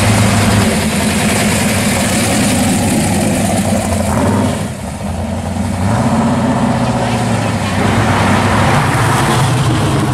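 Classic American cars' engines pulling away one after another on the street, a steady low exhaust note with a short drop about five seconds in as one car gives way to the next.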